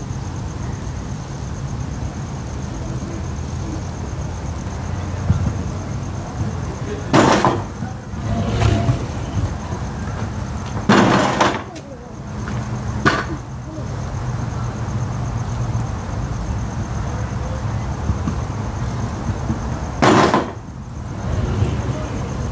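Four loud, sharp clattering knocks spaced irregularly over a steady low hum, typical of a stunt scooter hitting concrete.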